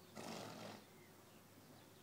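A horse snorting: one short, breathy blow through the nostrils lasting about half a second, just after the start.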